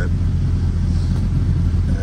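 Volkswagen 12-valve VR6 engine idling steadily, a low even rumble heard from inside the car's cabin.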